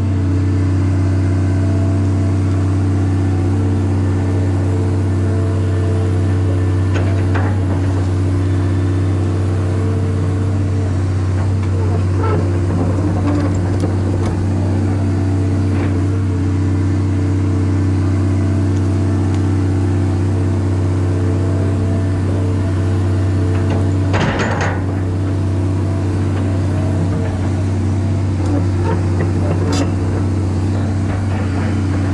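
John Deere excavator's diesel engine running steadily at working speed, heard from the operator's cab while the bucket rakes dirt out of a ditch bottom. A few knocks and scrapes from the digging sound over it, the loudest a brief clatter about 24 seconds in.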